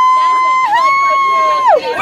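A young woman's voice holding one long, high-pitched note. It dips briefly about two-thirds of a second in, comes back slightly higher, and falls away near the end.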